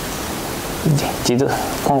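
Steady background hiss with no distinct events for about the first second. A man's voice then resumes speaking Japanese, starting about halfway through.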